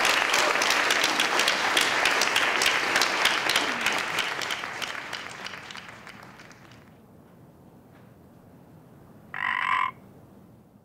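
Audience applauding at the end of a talk. The clapping is loud at first and fades away over the next several seconds. Near the end comes a single short tone lasting about half a second.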